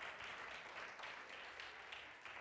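Studio audience applauding, a steady patter of many hands that slowly fades.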